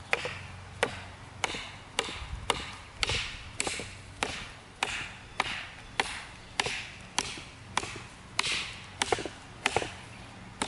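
Ka-Bar Becker BK2, a quarter-inch-thick 1095 carbon steel knife, chopping into a thick branch resting on a tree stump: a steady run of sharp wooden chops, a little under two a second.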